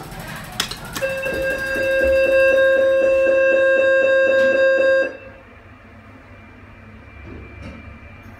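Mitsubishi passenger lift's door-closing warning tone: a steady electronic chord pulsing about four times a second for about four seconds, which then cuts off and leaves the low hum of the lift car. A couple of clicks come just before the tone starts.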